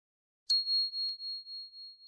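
A single high bell 'ding' sound effect, the notification-bell chime of a subscribe-button animation, struck once about half a second in and ringing on with a pulsing, slowly fading tone. A faint click about a second in.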